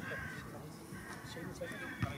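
Distant shouts from players on an outdoor football pitch, faint and intermittent, over a low open-air rumble.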